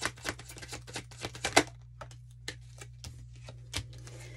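Tarot cards being shuffled by hand: a rapid run of small card clicks for about the first second and a half, then a few scattered single clicks as cards are drawn and laid down.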